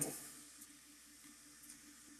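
Near silence: faint steady room hiss as the last word of a man's voice fades out at the start.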